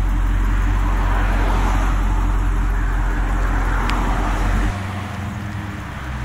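Car engine running at low speed with a deep rumble and road noise, as the car rolls slowly. About three-quarters of the way through, the deepest part of the rumble drops away abruptly and the sound becomes lighter.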